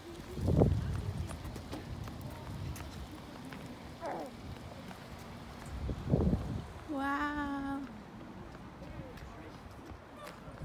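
Footsteps on pavement as people walk, with two low thumps about half a second and six seconds in, and a short held voice-like tone about seven seconds in.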